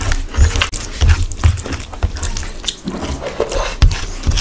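Close-miked wet chewing of a mouthful of oily rice and curry, about two chews a second, with lip smacks and clicks. Fingers squish through the rice on the plate.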